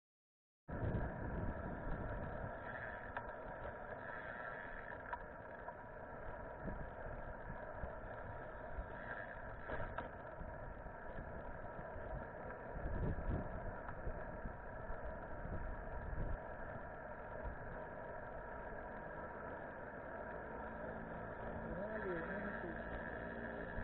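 Muffled wind buffeting and tyre-on-road rumble picked up by an action camera while cycling, with a faint steady hum, cutting in abruptly just under a second in.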